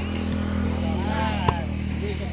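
A volleyball is struck hard once, about one and a half seconds in. Players are shouting, and a steady low motor hum runs underneath.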